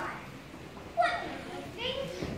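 Young children's voices: high-pitched calls and chatter, with a short, loud rising exclamation about a second in.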